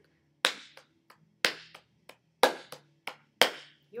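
Hand claps beating out a rhythm pattern for a student to clap back: louder claps about a second apart, coming closer together near the end, with softer claps between.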